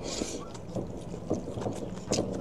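Spicy fried rice noodles slurped in a short hissing rush, then chewed with a few soft, wet mouth clicks.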